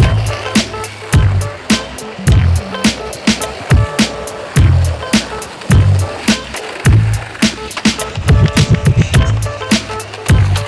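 Soundtrack music with a steady drum beat: crisp hits several times a second over a deep bass note that comes round about once a second.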